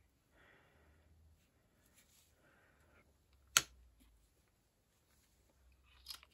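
Faint handling sounds of a small gel paint pot and spatula in gloved hands, with one sharp click about three and a half seconds in.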